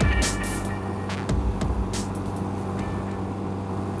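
Electronic music with sharp beat hits fading out over the 1985 Honda Rebel 250's parallel-twin engine running steadily at cruising speed. The beats thin out after the first couple of seconds, leaving the engine.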